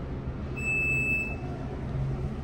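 An elevator's electronic signal sounds a single steady high beep lasting about a second, over a steady low hum.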